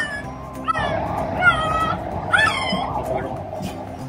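Young puppies squealing as they struggle to nurse from their mother: about four short, high-pitched cries, each rising and then falling, in the first two and a half seconds.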